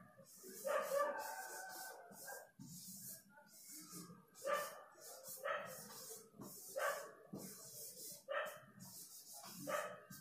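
Faint, short dog barks, repeating every second or so through the second half, with a longer call near the start. Under them a felt-tip marker scratches in short strokes across a whiteboard as words are written.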